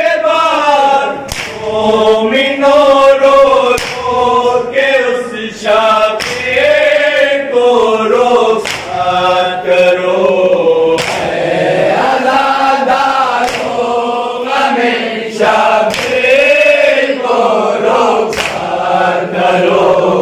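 A group of men chanting a nauha (Shia lament) in unison without instruments, in long sung phrases. Sharp slaps land every second or two, the mourners beating their chests (matam) in time.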